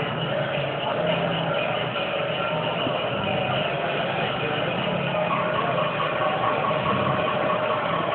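Steady, dense street din with music playing under it, with no single event standing out.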